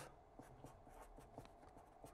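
Faint scratching of a felt-tip marker writing on paper, in a run of short, irregular strokes.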